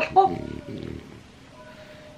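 A brief vocal sound at the start, then a French bulldog's short, rough, throaty breathing lasting under a second. After that only a faint steady tone remains.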